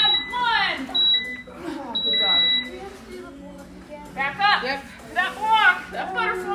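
Gym interval timer beeping the end of a work interval: a short beep at the start and another about a second in, then a longer closing beep about two seconds in. Voices exclaim around the beeps.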